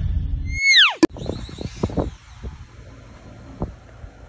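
End of a channel-intro jingle: a low steady sound, then a falling whistle-like glide and a sharp click as it cuts off. After that, quieter outdoor sound with a few faint scattered ticks.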